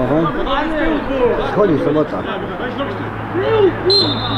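Several men's voices talking and calling out over one another: spectator chatter, without one clear speaker.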